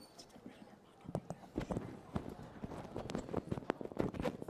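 Microphone handling noise: irregular knocks and bumps, starting about a second in, with faint murmured talk beneath.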